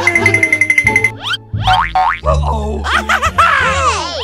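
Comedy background music with cartoon sound effects: a fast pulsing high trill in the first second, then a run of springy boing glides bending up and down in pitch.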